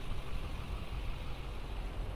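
Low, steady rumble of a 6.6-litre Duramax LMM V8 diesel idling, with a faint hiss over it.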